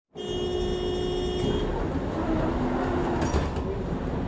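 Interior sound of a Tatra T3M tram standing with its doors open: a steady hum of several tones from the tram's electrical equipment that stops about one and a half seconds in, then a steady low rumble.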